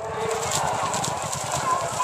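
Hooves of several racehorses galloping on grass turf as they pass close by, over a steady rush of background noise.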